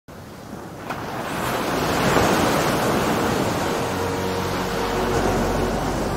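Sea waves washing in a steady hiss that swells up over the first couple of seconds, with soft music notes starting to come in about halfway through.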